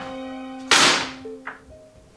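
Over soft background music with held tones, a picture frame is slammed down onto a table: a sudden loud crash about two-thirds of a second in that fades within half a second, followed by a small click.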